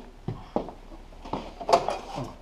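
A few short clicks and knocks of hands handling the plastic conveyor of a Xerox J75 printer's finisher while feeling underneath it for the data-cable clip, the loudest knock coming near the end.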